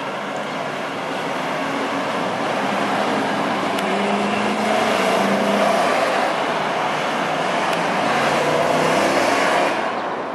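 Motorcade vehicles driving past on a city street, engines and tyre noise swelling to a peak about halfway through and again near the end.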